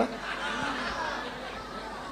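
Faint, indistinct murmur of voices in a large hall, with no close voice on the microphone.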